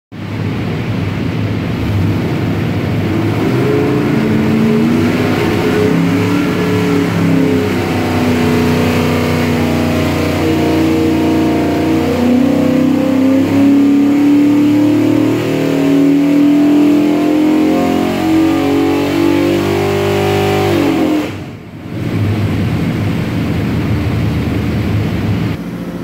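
363 cubic-inch Ford small-block stroker V8 with FAST EFI running under load on an engine dyno. It runs loud and steady at speed, then about 21 seconds in the revs fall away sharply with a brief dip, and it carries on at a lower, idle-like level.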